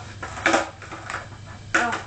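A shoe sole briefly scuffing across skateboard griptape about half a second in: the front-foot slide of an ollie, with the foot tilted, done on a stationary board.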